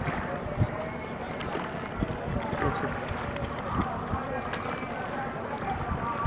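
A wooden rowboat being rowed by hand, the oars giving a few sharp, irregular knocks against the boat, over a background of indistinct voices.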